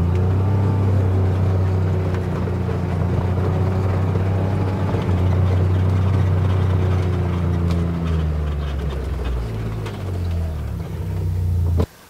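Side-by-side utility vehicle's engine running steadily as it drives across a field, its pitch wavering and dipping about eight to ten seconds in, then cutting off suddenly near the end.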